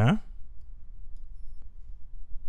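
A man's short "yeah", rising in pitch, right at the start, then a steady low hum with a faint click near the end.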